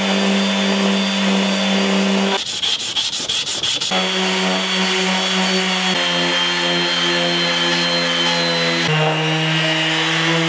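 Electric random orbital sander running steadily with a hum while polishing a steel cleaver blade. About two and a half seconds in, the hum gives way for a second and a half to a rattling stretch of rapid clicks, then comes back and settles slightly lower in pitch twice.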